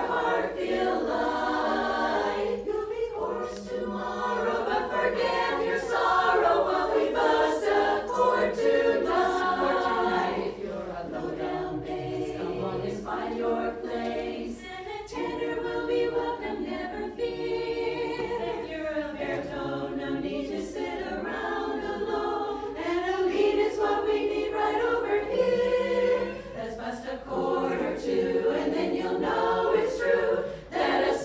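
Women's chorus singing a cappella, many voices in sustained chords, with a softer passage partway through.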